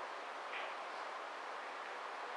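Steady background hiss of a large indoor tournament hall with the balls at rest, and one faint soft sound about half a second in.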